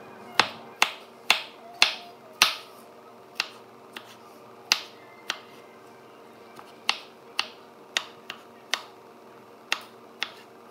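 Kitchen knife dicing a tomato on a wooden cutting board: sharp, irregular knocks of the blade striking the board, about one or two a second, with a short pause a little past the middle.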